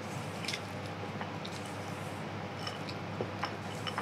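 Faint scraping and a few small clicks of a spatula folding stiff cookie dough in a stainless steel mixing bowl, over a steady low hum.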